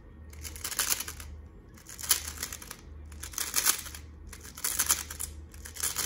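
A plastic 3x3 speedcube turned quickly by hand through an OLL algorithm: quick runs of clicking, clacking layer turns. It comes in about five bursts, each under a second, with short pauses between.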